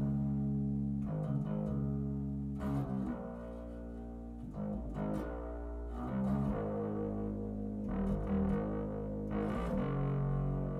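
Four-string electric bass played fingerstyle, run through an Aguilar unit with its overdrive engaged for a slightly crunchy tone. It plays a line of sustained low notes that change every second or two.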